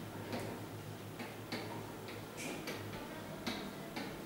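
Marker pen writing figures on a whiteboard: short, uneven strokes and taps, about two a second.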